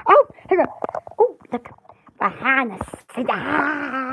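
A woman's voice making short wordless vocal sounds that slide up and down in pitch, with a longer, breathier drawn-out sound near the end.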